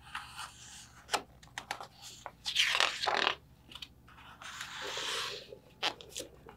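Paper pages of a picture book being turned and handled, rustling and scraping, with the strongest swish about halfway and a longer, softer rustle a little later, plus a few light taps.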